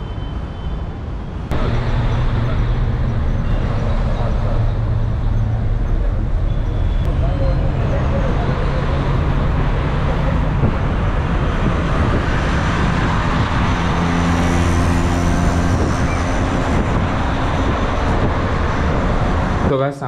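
Engine and road noise of a moving bus heard from inside: a loud, steady drone whose engine pitch shifts a few times, starting abruptly just over a second in.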